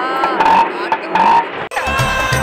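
Laughter from the studio audience and judges, with music starting just before the end.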